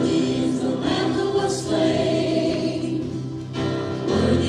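A worship song sung by a group of voices over held instrumental chords.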